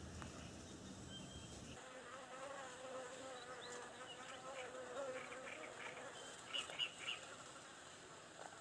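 A flying insect buzzing: a faint, wavering drone that starts about two seconds in and fades out after about six seconds. A low rumble stops suddenly just before the buzzing starts, and a few short high chirps sound near the end.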